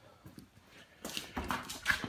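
Quiet for about a second, then a quick run of soft knocks and scuffs, like footsteps on concrete and handling of the camera.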